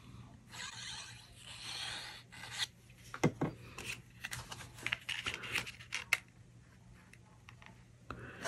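Cardstock being handled: rubbing and light scraping on paper as a glue bottle's tip runs along a small paper tab, then scattered light clicks and taps as the card pieces are picked up and set down.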